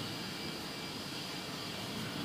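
Steady, even hiss of background room and recording noise, with no distinct event standing out.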